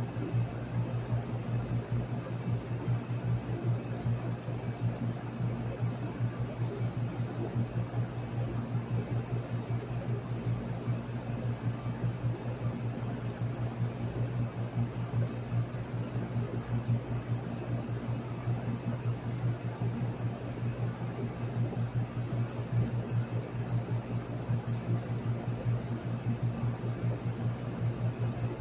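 Packaged air-conditioning unit running with its newly replaced condenser fan motor: a steady low hum under an even rush of air from the condenser fan.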